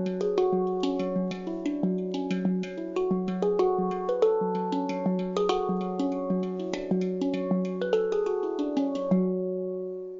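Panstream handpan played as music, a melody of struck notes that ring on and overlap over a recurring low note. The last notes are struck about nine seconds in and fade out.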